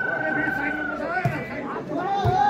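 Spectator crowd chattering, with a long steady whistle note that ends about a second in.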